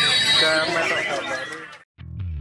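White-rumped shama (murai batu) singing in a contest cage, mixed with people's voices. The sound fades out to silence just before the end.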